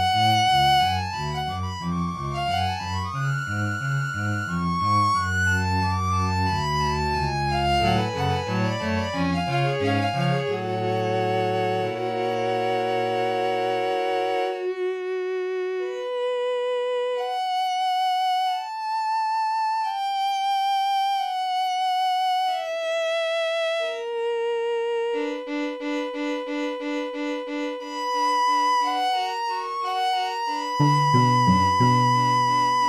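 String quartet music. For the first half, low cello notes move under the upper parts; about halfway through the low part drops out, leaving the higher strings playing longer held notes on their own.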